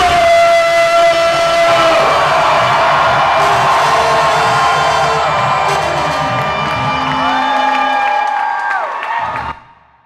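A live hip-hop band with drums, guitar and keyboards plays over a crowd cheering and whooping. A note is held at the start. The sound cuts off abruptly shortly before the end.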